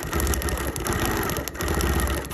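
Quilting machine stitching with metallic thread, running steadily with a low hum and dipping briefly about a second and a half in before picking up again.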